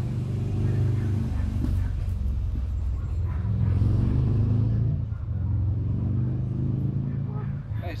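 A motor vehicle's engine running, a steady low hum that swells somewhat in the middle.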